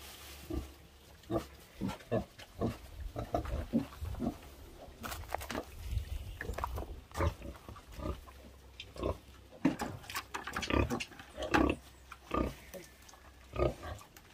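Domestic pigs grunting, short grunts coming a few times a second with some louder ones a little past the middle.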